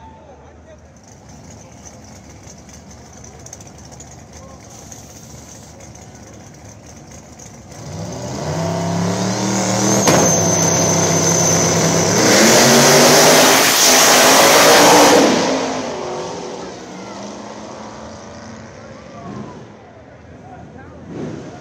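Two small-tire drag cars launching side by side and accelerating hard down the strip. Their engines build about eight seconds in, are loudest for a few seconds, then fade as the cars pull away.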